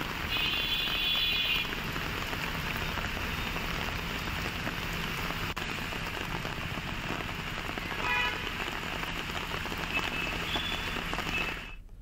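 Steady heavy monsoon rain falling, with brief faint higher tones over it about a second in and again about eight seconds in. The sound cuts off just before the end.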